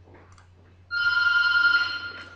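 An electronic ringing tone, several steady pitches sounding together, starting abruptly about a second in and lasting about a second before fading.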